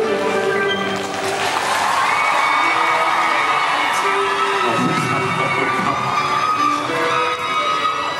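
Background music playing while a large crowd of fans screams and cheers, the screaming swelling about a second in and holding until near the end.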